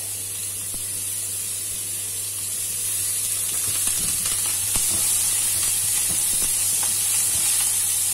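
Diced sausage and garlic sizzling steadily in hot oil in a nonstick frying pan, with a spatula stirring and scraping the pieces now and then. The sizzle grows a little louder partway through.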